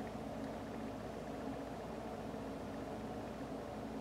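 Quiet room tone: a steady low hum with faint hiss and no distinct sounds.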